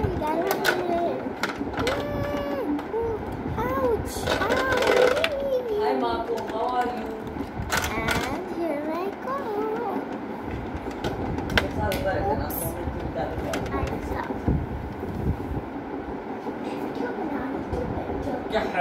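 A child's high-pitched voice making wordless sing-song sounds that glide up and down, mostly in the first half. It runs over a low rumble, with frequent clicks and taps from plastic dolls being handled close to the microphone.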